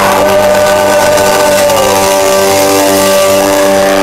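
Live rock band holding a sustained chord: distorted electric guitar and bass ringing steadily over cymbal wash, loud through the club's amplification.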